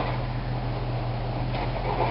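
A vehicle engine running steadily at idle: a constant low hum under a hiss.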